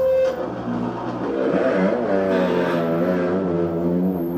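Rock music led by a distorted electric guitar, its sustained notes starting to waver and bend about a second in.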